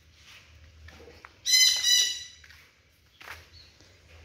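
A sun conure gives one loud, harsh squawk lasting under a second, about a second and a half in.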